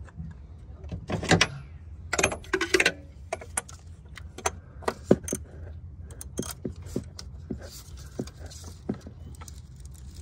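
Metal tools clinking and rattling while a socket ratchet is worked on a diesel fuel filter housing: a louder metallic clatter in the first three seconds, then a string of sharp, separate clicks.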